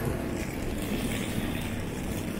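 Steady low rumble of vehicle traffic, with no single event standing out.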